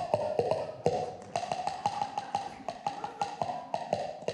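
Drum solo on a jazz drum kit: fast, uneven run of sharp, ringing strikes, several a second, moving a little in pitch from stroke to stroke.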